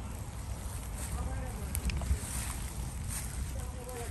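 Wind buffeting a handheld phone microphone, an uneven low rumble, with faint voices in the background.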